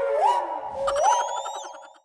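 Cartoon sound-effect sting: two quick upward pitch glides, each settling into a held wavering tone, the second fading out near the end.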